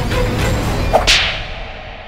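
A single sharp whip-crack sound effect about a second in, cutting through dramatic background music, then a quick fade to near quiet.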